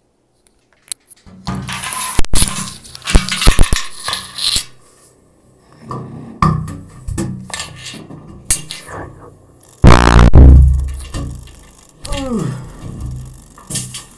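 A mobile phone clattering and scraping as it slides down through the brass tubing of a tuba, with a loud, low tuba blast about ten seconds in.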